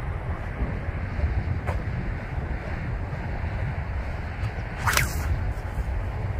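A 60-inch Dyneema shepherd's sling being cast with a molded golf ball: one sharp crack as it releases, about five seconds in. Steady wind rumble on the microphone runs underneath.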